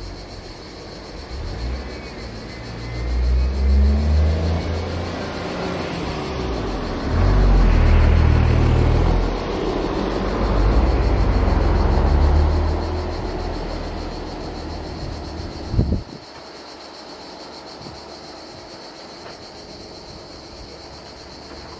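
A motor vehicle's engine rumbling close by, swelling and easing in waves for about a dozen seconds. Near the end it stops abruptly after a short knock.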